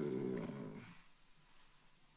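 A man's voice holding a drawn-out hesitation sound, a long 'eee', that fades out about a second in.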